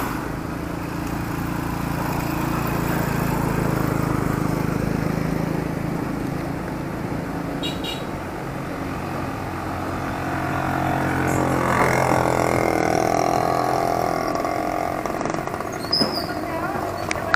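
Engine and road noise of a vehicle being driven at night, running steadily and easing up and down a little with speed. Another vehicle passes about eleven seconds in.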